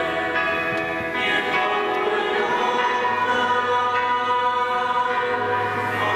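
Many voices singing a hymn together in long, held notes.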